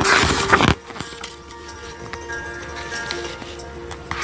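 A picture-book page being turned: a loud paper rustle lasting under a second at the start. Soft background music with long held notes continues under it and after it.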